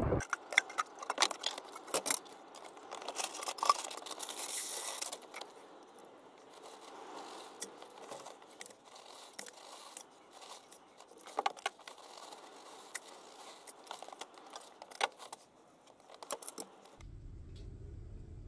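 Plastic feed buckets and their wire bail handles being handled on a hanging scale hook: scattered clicks, rattles and scrapes, busiest in the first few seconds, with a short hiss about four seconds in.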